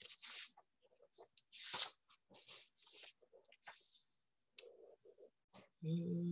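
Faint, scattered short rustles and clicks close to a computer's microphone, like handling a mouse and desk while working the slides.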